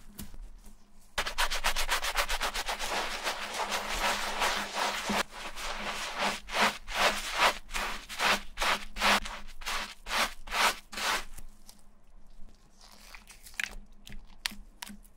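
Wooden-handled scrub brush scrubbing a foamy, shampooed shoe insole, starting about a second in with fast continuous back-and-forth strokes that then settle into distinct swipes about two a second, stopping about two seconds before the end.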